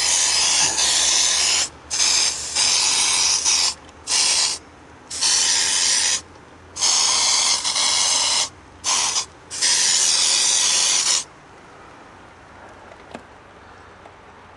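Aerosol can of Raid insecticide spraying in about seven bursts of hiss, each half a second to two seconds long, starting and stopping sharply; the last burst stops about eleven seconds in.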